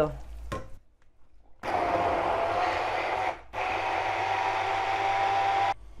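Immersion hand blender puréeing sautéed red and green peppers, garlic and stock in a plastic jug. It runs twice, for about two seconds each, with a short break between. A steady motor whine sits under the churning.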